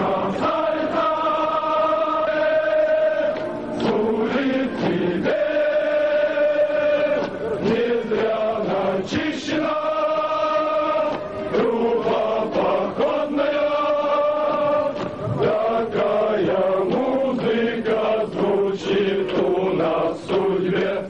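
A formation of male cadets singing a Russian military marching song in unison as they march, the phrases ending on long held notes.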